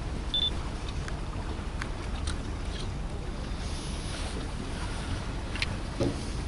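Wind buffeting the camcorder microphone, a steady low rumble, with a short high chirp about half a second in and a few faint clicks.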